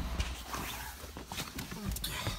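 Handling noise as someone settles into a car's driver seat with a handheld camera: scattered light knocks, clicks and rustling of clothing and seat.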